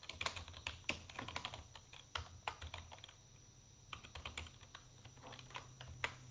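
Computer keyboard being typed on: quick, irregular key clicks in two runs, with a short pause a little past halfway.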